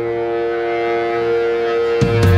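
Heavy blues rock recording holding a single long, steady note with strong overtones, with no beat under it.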